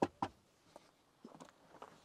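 A few faint clicks and light knocks from the fold-out tailgate seat of a Range Rover as its backrest panel is flipped up and locked and the tailgate is sat on. The sharpest click comes right at the start, a second soon after, then smaller ticks.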